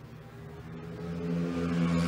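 Engines of small single-seater race cars running at a steady pitch and growing steadily louder.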